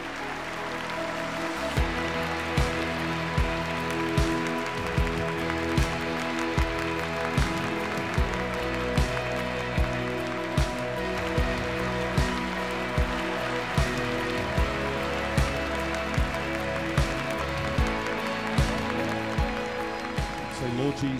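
Live church worship band music: held chords throughout, with a drum beat entering about two seconds in at a steady, moderate pace of a little over one beat a second. A large congregation claps along.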